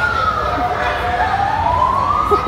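A siren wailing: one steady tone that drops in pitch during the first second and climbs back up near the end, over background chatter.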